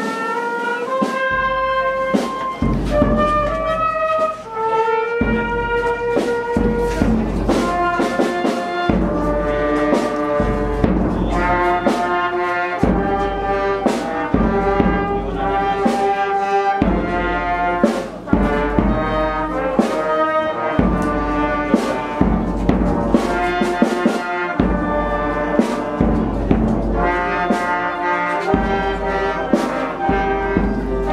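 Brass band music: a slow melody of held brass notes over a steady low beat.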